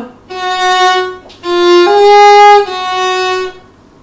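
Violin bowed in four sustained notes. The second note is a high first finger placed just below the second finger, slightly lower than the first note. The third note is the highest and loudest, and the last returns to the opening pitch.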